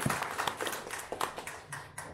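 Small audience applauding, the clapping thinning out and dying away near the end.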